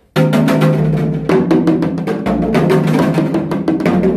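Janggu hourglass drum played in rapid rolls: the thin bamboo stick bounces on the drumhead in quick runs of strokes, the 'deoleoleoleo' roll of Gutgeori jangdan. The stick is left to rebound until it stops. The strokes start abruptly and come in several runs, with the drum's low ring beneath them.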